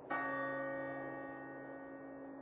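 A bell struck once, just after the start, its many ringing tones fading slowly over a quiet sustained musical pad.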